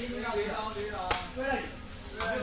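A single sharp smack about halfway through, typical of a rattan sepak takraw ball struck by a player's foot, over the chatter of crowd voices.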